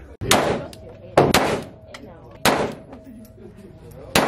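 Handgun shots in an indoor shooting range: four sharp reports, each with a short ringing tail from the room, two of them fired close together about a second in.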